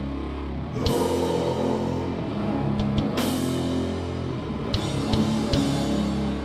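Heavy metal band playing live: distorted guitar and bass holding slow, low chords, with crashing drum and cymbal hits about a second in and again after about three seconds.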